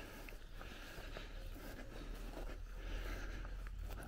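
Faint rustling of footsteps through long grass and of the camera being handled while walking, over a low steady rumble.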